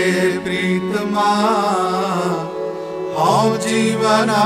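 Sikh Gurbani kirtan music at the opening of a shabad: a wavering melodic line over a steady low drone.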